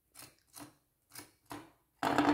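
Four short, faint scratchy strokes of hands and a small tool rubbing and scraping over a bottle's textured painted surface.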